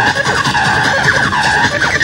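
Techno from a DJ mix: a steady high synth tone with repeated swooping, falling and rising pitch glides over it.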